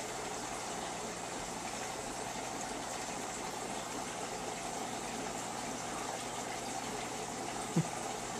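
Aquarium filter running: a steady rush of circulating water with a faint low hum under it.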